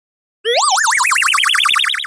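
A cartoon-style wobbling sound effect added in editing: one whistle-like tone that warbles rapidly up and down while climbing in pitch, the wobble getting faster, starting about half a second in.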